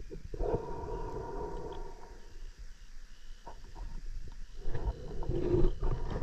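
A diver breathing underwater through a sidemount closed-circuit rebreather (Kiss Sidewinder mCCR): one breath early on, a lull, then a louder breath near the end, with small clicks from the loop.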